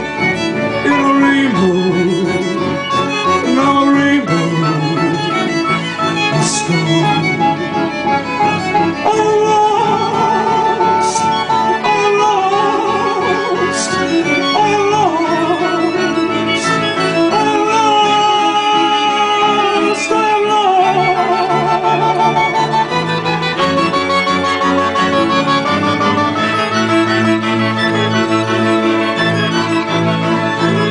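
Live chamber-pop ensemble playing an instrumental passage: clarinets and bowed strings (violins, cello) over a keyboard, with sustained melodic lines, some wavering with vibrato.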